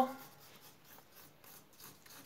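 Faint scratching of a pencil drawing on paper.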